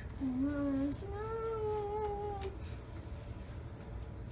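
A young child's voice singing two held, wordless notes: a short lower one, then a higher one held for about a second and a half.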